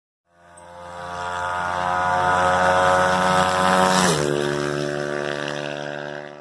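An engine passing by: a steady engine note that grows louder, then drops in pitch about four seconds in as it goes past and fades away.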